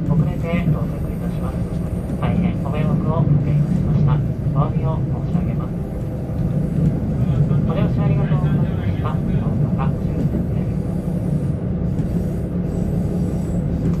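Steady low running hum of a KiHa 85 diesel railcar rolling slowly into the station, heard from inside the car. An onboard PA announcement voice comes and goes over it.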